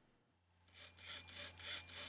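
Pololu Zumo tracked robot's small gearmotors and rubber tracks moving it in quick back-and-forth jerks, a faint rasping whir in repeated pulses, several a second, starting about half a second in.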